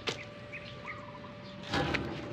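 A slip knot in a rope being pulled loose from a steel beam: a click at the start and a short rustle of rope near the end. Faint bird chirps over a low steady hum in between.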